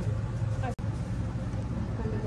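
Steady low hum of room tone with faint voices, broken by a momentary dropout under a second in.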